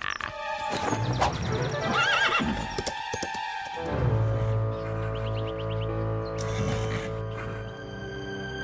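A horse sound effect whinnying about two seconds in, over background music that settles into sustained chords.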